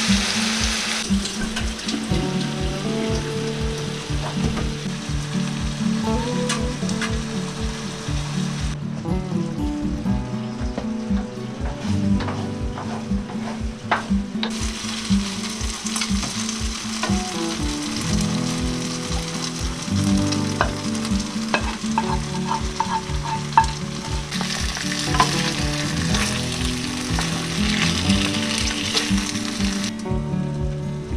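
Turkey pieces and peppers sizzling in a frying pan on a gas stove, with a wooden spoon stirring and scraping now and then. The sizzle thins out for a few seconds in the middle and comes back strongly near the end. Soft background music with a steady beat runs underneath.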